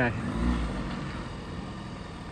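Box van's engine running at low revs as the van creeps forward, with a low rumble that swells about half a second in and then settles to a steady lower running sound.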